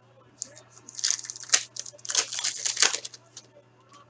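A foil trading-card pack (2019-20 Upper Deck Trilogy hockey) being crinkled and torn open by hand: an irregular crackling run lasting about three seconds.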